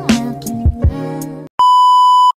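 Background music with a steady beat that cuts off about one and a half seconds in; after a brief gap, a loud, steady test-tone beep, the kind played over TV colour bars, starts near the end.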